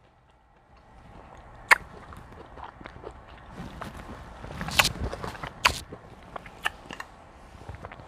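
A person eating up close: quiet chewing and finger-licking with a few sharp lip smacks, after a moment of silence.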